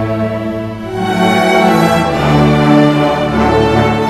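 Youth string orchestra of violins, cellos and double basses playing sustained chords, swelling louder and fuller about a second in and moving to a new chord near the middle.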